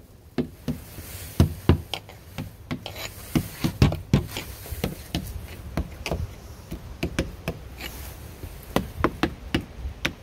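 Irregular tapping and knocking on wood, several taps a second with a brief sparser stretch past the middle, as wood is sounded for fungus or termite damage.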